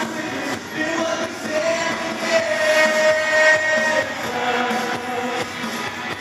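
Live praise band playing a worship song with singing, including a long held sung note about a second and a half in that lasts a couple of seconds, over a steady beat.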